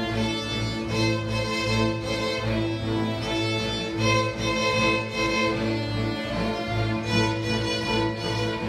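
Youth string orchestra of violins, cellos and double bass playing a piece together: sustained bowed notes over a steady low bass line.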